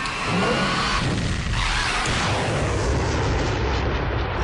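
Drag racing cars' engines running at the start line, then launching down the strip in a loud rush of engine noise from about a second and a half in.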